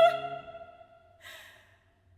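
A female opera singer's held note with vibrato dies away within the first half second, along with the lower accompaniment. About a second later comes one short, audible breath, then quiet.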